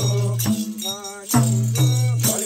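Nepali folk Bhailo music: madal barrel drums beaten in a repeating deep tone, with small hand cymbals shimmering and voices singing.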